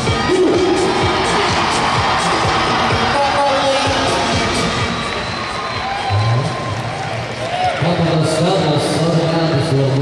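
Arena crowd cheering and shouting over music from the loudspeakers.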